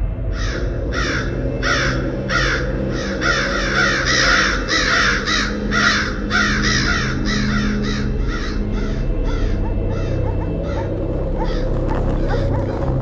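A flock of crows cawing in a quick run of calls, about two to three a second, thinning out and growing fainter toward the end, over a low steady drone.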